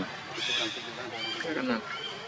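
Indistinct human voices talking in short phrases.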